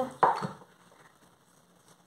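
A single soft knock of a wooden rolling pin on dough and board just after the start, fading within half a second, followed by near silence as the pin rolls over the dough.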